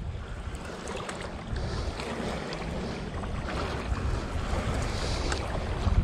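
Wind rumbling on the microphone over small waves lapping at the riverbank, a steady noisy background with no clear single event.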